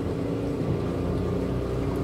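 Small car's engine running steadily, heard from inside the cabin as the car wades through deep flood water: a low, even hum and rumble.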